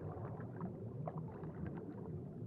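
Faint, low rumbling ambience with small scattered gurgle-like blips, like water moving against a boat.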